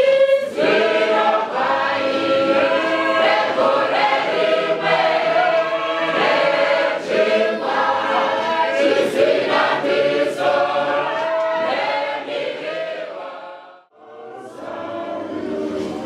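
Choir singing a hymn, fading out about two seconds before the end; a quieter, different sound follows after a brief drop.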